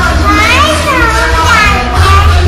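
A young girl's high voice squealing and calling, swooping up and down in pitch, over background music.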